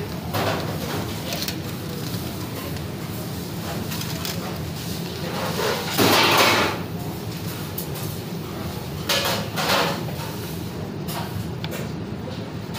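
Commercial kitchen background: a steady low machine hum, with scattered knocks and clatters of handling. A louder burst of noise comes about six seconds in and lasts under a second.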